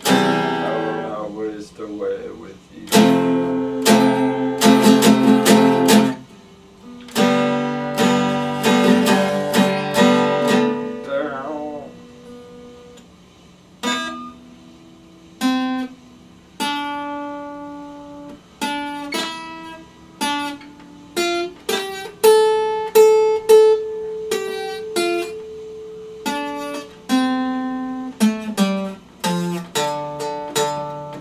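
Epiphone acoustic-electric guitar played unplugged: strummed chords in three runs over the first eleven seconds, then after a short lull single notes picked one at a time, one of them held for a few seconds about two-thirds of the way through.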